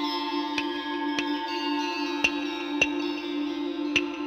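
Ambient background music: a sustained low drone with held higher tones, and a sharp tick roughly every half second.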